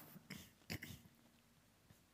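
Near silence: church room tone with a few faint clicks in the first second.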